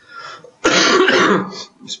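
A man clears his throat once, a loud, rasping burst lasting under a second, a little after the start.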